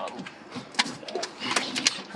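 Rustling and several short knocks and clicks as a red plastic water jug is lifted out from among bags on a vehicle's back seat.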